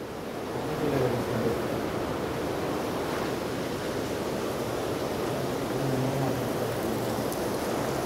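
Steady rushing noise like wind, even throughout with no distinct knocks or calls.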